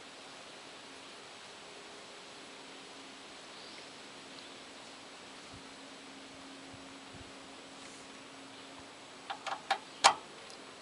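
Faint steady background hiss with a low hum. Near the end, a few quick clicks as the red high-pressure AC quick coupler valve is pushed onto the high-pressure service port.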